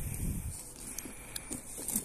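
Low rumble of handling noise on a phone's microphone as the camera is moved, then a quiet outdoor background with a few faint clicks.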